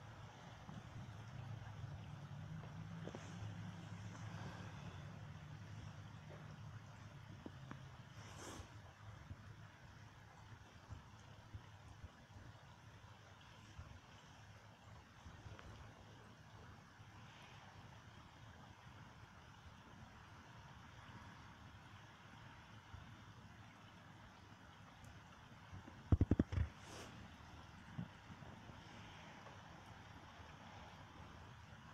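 Heavy rain falling as a steady, even hiss, with a low rumble over the first several seconds and a few loud, sharp thumps near the end.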